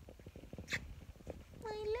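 Dog chewing and mouthing a knotted rope toy: a run of small clicks and rustles, with one sharper snap a little under a second in. A woman's high voice starts speaking near the end.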